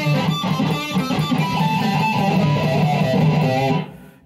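Semi-hollow electric guitar through an amp playing a fast run of notes with pinched harmonics squealing on nearly every note, a deliberately overdone use of the technique. It stops suddenly just before the end.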